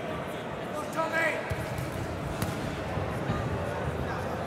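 Boxing-hall crowd murmur with a voice calling out about a second in, followed by a run of dull thuds from the ring and one sharp smack near the middle.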